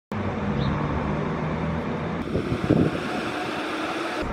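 Coach bus diesel engine idling, a steady low drone, with a few brief irregular knocks a little past halfway.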